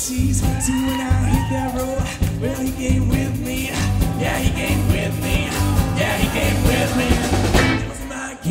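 A live rock band playing a full arrangement: strummed acoustic guitar and electric guitar over a bass line and drum kit, with a bending melodic line on top.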